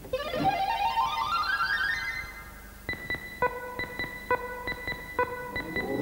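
Game-show electronic sound effects: a quick rising run of synthesizer notes, then a string of short electronic beeps at one pitch as the chosen letters are revealed on the puzzle board.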